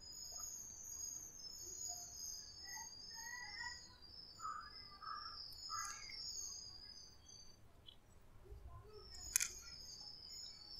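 Faint birds chirping in the background: a continuous, wavering high-pitched twittering with scattered shorter chirps. A single sharp click comes near the end.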